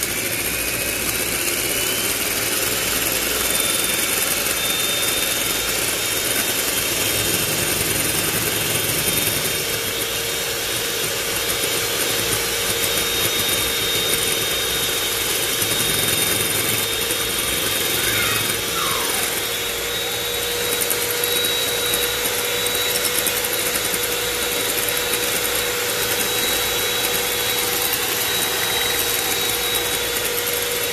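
Electric hand mixer running steadily, its beaters whipping powdered whipped-cream mix with cold milk in a glass bowl so that it thickens. A steady motor whine, with a second lower hum joining about a third of the way in.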